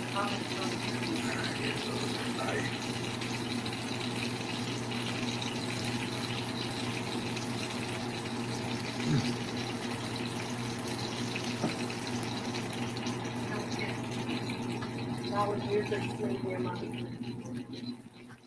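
Burgers sizzling in a frying pan on a stove: a steady hiss with a low hum underneath, which drops away near the end.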